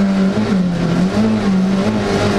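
Rally car engine heard from inside the cockpit, its revs dipping and rising several times as the car is driven through a tight right-hand bend.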